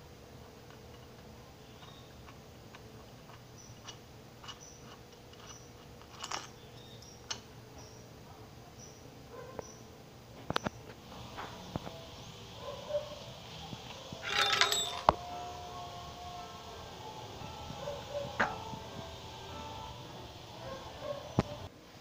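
Low room tone with scattered light clicks and knocks of small metal parts being handled, and a louder rustling burst about two-thirds of the way through.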